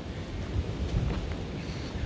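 Wind buffeting the microphone: an uneven low rumble with a few soft bumps near the middle, and no voice.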